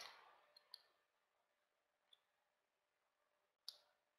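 Near silence with a few faint computer mouse clicks: two close together under a second in, one at about two seconds, and a slightly louder one near the end.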